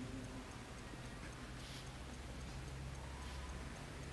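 Quiet background room noise with a low steady hum and a faint, evenly spaced ticking.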